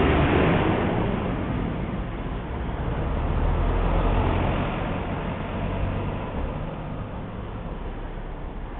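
Road traffic going past, a low rumbling noise that swells at the start and again about four seconds in as vehicles pass, then eases off.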